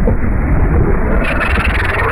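Speedboat engine running at speed with rushing water, a loud low rumble that turns brighter and hissier a little over a second in.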